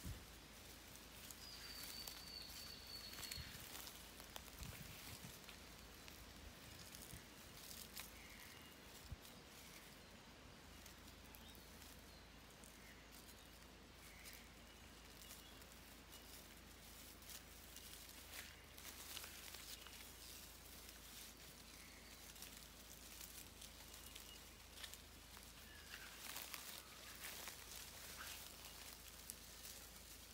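Quiet bush ambience: faint scattered crackles and rustles in dry leaf litter, with a thin high call about two seconds in.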